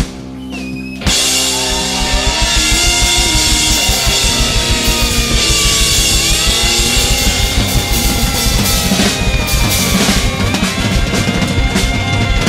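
Instrumental rock music: after a short lull, the full band comes back in about a second in with fast, driving drums, bass and electric guitar.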